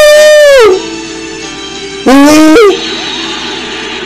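A man's loud, drawn-out 'ooh' vocal exclamations of mock surprise, twice: the first sliding down in pitch and stopping just under a second in, the second about two seconds in and lasting half a second. The voice is so loud it is distorted. A steady quieter background of music or hum runs under both.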